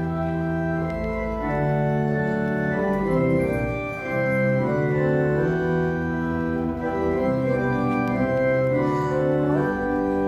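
An organ playing slow, sustained chords over a moving bass line, each chord held steadily before changing to the next.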